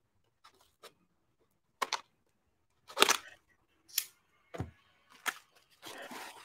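Packaging being opened by hand: a handful of short, separate rustles, scrapes and clicks, with quiet gaps between them.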